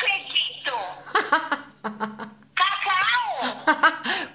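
A woman laughing, mixed with some speech.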